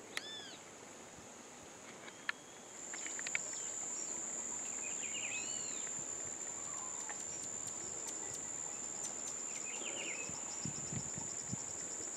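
Wild birds give short, arched calls a few times over a steady, high-pitched insect drone, which grows louder about three seconds in.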